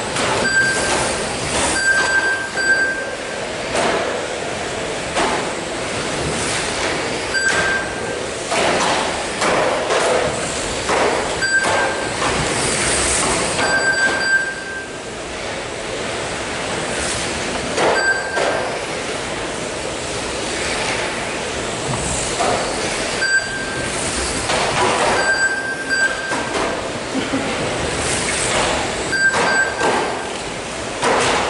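Several 1/12-scale electric GT12 RC racing cars running flat out on a carpet track: electric motor and drivetrain whine with tyre noise, and frequent knocks as the cars hit the track barriers. Short high electronic beeps sound one or two at a time, again and again, as cars cross the lap-timing line.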